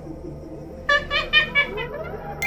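Soft background score, with a short run of five or six quick, high-pitched laughing notes from a woman about halfway through.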